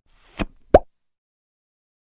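Two short plop sound effects closing a logo animation, the second louder with a quick rising pitch.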